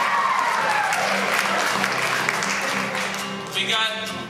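Audience laughter and clapping over a steady acoustic guitar accompaniment. A held sung note slides down in pitch in the first second, and singing starts again near the end.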